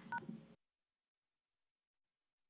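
A short electronic beep made of two tones sounding together, like a telephone keypad tone. Then the sound cuts off to dead silence about half a second in.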